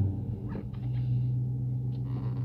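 A 2022 Dodge Charger R/T's 5.7-litre Hemi V8, heard from inside the cabin, just after starting: the start-up rev settles about half a second in into a steady, even idle.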